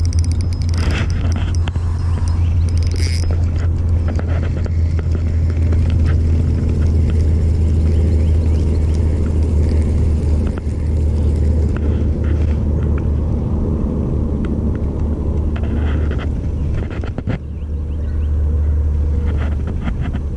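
A steady low rumble, with a run of faint clicks in the first few seconds.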